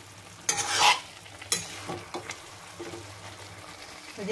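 Potato and fish pieces being stirred in a sizzling frying pan, with a loud scrape about half a second in and a few short knocks of the utensil against the pan after it.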